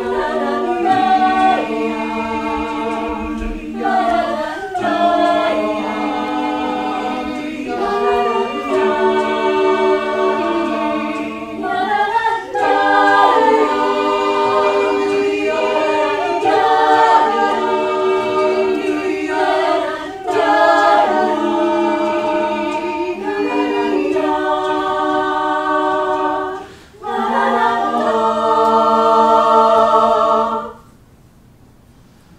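Mixed-voice a cappella choir of men and women singing in harmony, long chords moving from phrase to phrase with a brief breath break about 27 seconds in.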